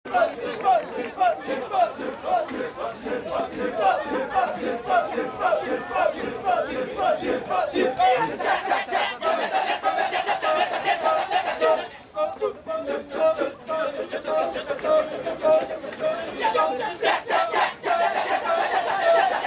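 Kecak chorus: a large group of men chanting rapid, interlocking "cak-cak-cak" syllables in rhythm, with no instruments. The chant drops briefly about twelve seconds in, then resumes with a steadier, evenly spaced pulse.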